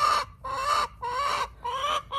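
Domestic hens clucking: a string of short, even-pitched calls, about two a second.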